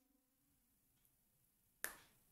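Near silence, broken by one short, sharp click near the end.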